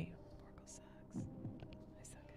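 Faint whispered speech over a steady low hum.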